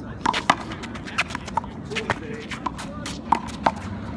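Small rubber handball being slapped by hand, smacking off a concrete wall and bouncing on the court during a one-wall handball rally: an irregular series of sharp smacks.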